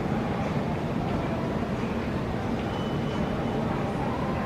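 Steady airport-terminal background noise: an even low rumble with no clear single source, and a faint, brief high tone a little under three seconds in.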